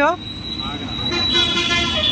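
Street traffic, with a vehicle horn sounding from a little over a second in and holding on a steady pitch.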